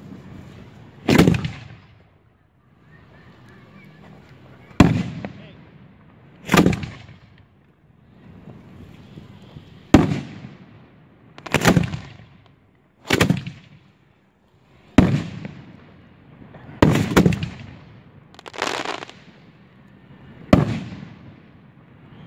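Aerial fireworks from finale cakes bursting overhead: about eleven loud booms at irregular intervals of one to two seconds, two of them close together near the middle, each trailing off in an echo.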